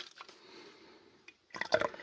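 Stout being poured from a can into a glass: a faint pour and drip that fades about halfway through, then a few small clicks near the end.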